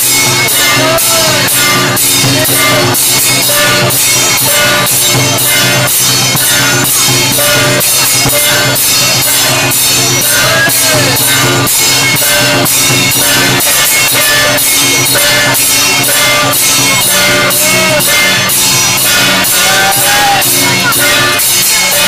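Taiwanese temple ritual percussion music: a fast, steady beat of about three or four strikes a second over sustained ringing tones, with a short wavering melodic line coming and going.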